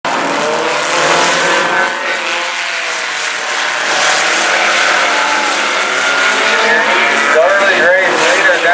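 Several sport compact race cars' four-cylinder engines running together on a dirt oval, a dense, continuous drone whose pitch shifts slowly as the cars speed up and slow down. A voice, likely the track announcer over the PA, comes in near the end.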